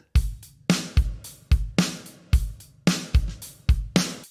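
Logic Pro for iPad's Session Player acoustic drummer in the Pop Rock style playing a steady pop-rock beat at 110 BPM: kick and snare hits about two a second, with cymbals over them.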